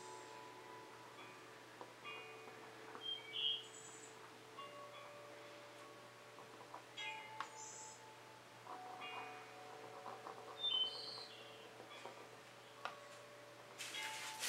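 Soft, faint background music of held, chime-like notes that change pitch every second or two, with a few brief high clinks.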